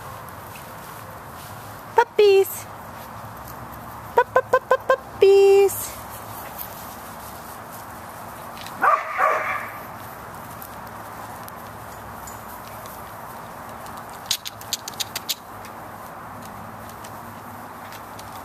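Puppies at play giving short, high-pitched yips and barks. There is one about two seconds in, a quick run of five around four to five seconds followed by a longer bark, and a cluster of sharp little yaps near the end.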